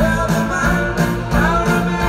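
Live rock band with a string section playing an upbeat pop-rock song with a steady beat and guitar.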